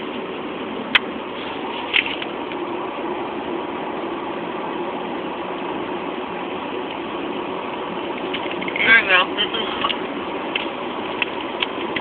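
Steady hum of a car's running engine heard inside the cabin, with a few small clicks and a brief voice or laugh about nine seconds in.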